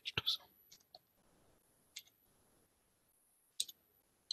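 Faint, scattered computer keyboard key clicks as a few keys are typed: a short cluster at the start, then single clicks about a second apart.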